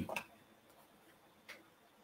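The tail of a man's spoken phrase, then near silence with one faint, short click about one and a half seconds in.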